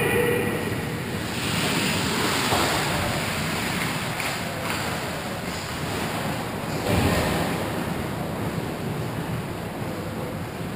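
Ice hockey game sound in a rink: a steady noisy rush of skates on the ice, with a heavy thump about seven seconds in, the loudest moment.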